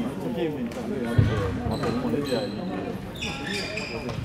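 Voices and general hubbub echoing in a large sports hall with several badminton games under way, with a sharp thump a little over a second in.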